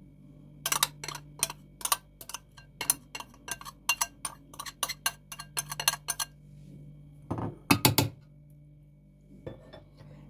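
A metal spoon clinking and scraping against a ceramic bowl, about three or four sharp clinks a second, as the last of a thick sauce is scraped out. A couple of heavier knocks follow near the end.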